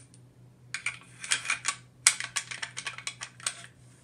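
Small metal clicks and light scraping of a SIG SG 553 rifle's bolt and carrier being fitted and slid into the rear of the receiver. A short cluster of clicks comes about a second in, then a longer run of quick clicks.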